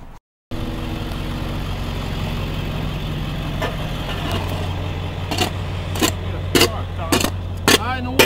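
Truck engine idling steadily while a pothole is patched, getting a little louder about halfway. From about halfway, sharp knocks come roughly every half second, from the patching work.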